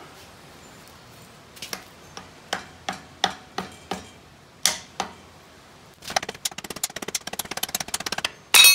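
Scattered clicks and knocks, one sharper about three-quarters of the way through the first half, then a fast rattling run of ticks in the last two seconds. This is parts being worked loose and handled while the ATV's rear axle and bearing carrier are taken apart.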